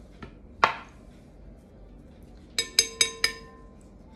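A small spoon clinking against glassware: one sharp clink just over half a second in, then four quick clinks that ring on briefly a little before the three-second mark.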